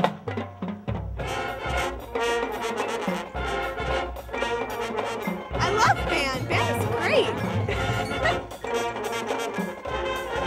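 Marching band music: a few drum strokes, then brass and drums playing together.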